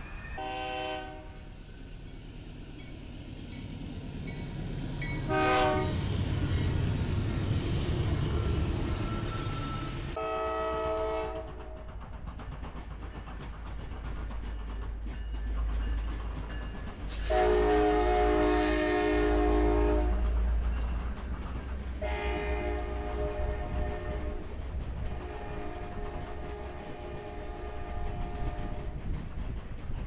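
Diesel locomotive horns sounding as passenger trains pass, over the low rumble of locomotives and rolling cars. Two short blasts come in the first few seconds. Then the sound changes abruptly to a second train, whose horn gives a short blast, a long loud blast near the middle, and two more long blasts toward the end.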